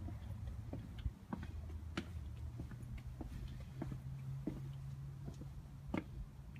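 Footsteps on a concrete walkway: a series of light, irregular clicks about two a second, over a low steady hum.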